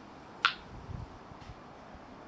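A single sharp click about half a second in, over faint steady hiss. The Quest Pro metal detector gives no tone of its own over the rusty nail: the iron is discriminated out.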